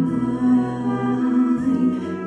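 A woman singing a slow Polish Christmas carol, accompanied by a wind band of brass and saxophones. The voice and the band hold long, sustained notes.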